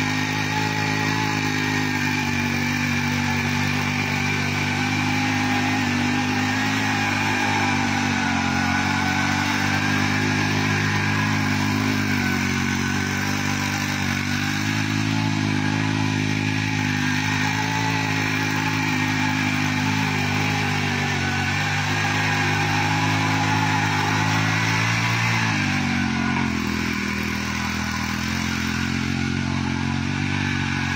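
The 63 cc four-stroke air-cooled petrol engine of a mini power tiller running steadily under load as its tines churn the soil around a tree base. Near the end its pitch drops as the engine slows.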